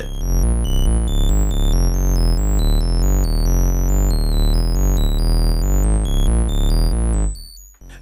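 ARP 2600 synthesizer playing a sample-and-hold-sequenced techno patch: a deep steady low end and a stepping bass line, with high notes jumping randomly in pitch above it. The pattern cuts off suddenly about seven seconds in.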